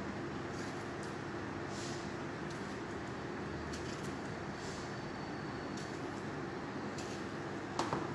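Steady hum of a kitchen fan, with faint clicks as tomatoes are cut into quarters with a small knife and dropped into a metal baking tray. A sharper knock comes near the end.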